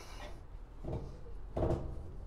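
Front wheel spindle of a BMW R1250GS being pushed through the wheel hub and fork: metal sliding and light knocking, with a sharp click at the start and a short clunk about a second in as it seats.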